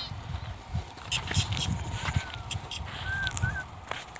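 Open-field ambience in a sheep pasture: a low wind rumble on the microphone, scattered light clicks, and three short, thin bird chirps in the second half.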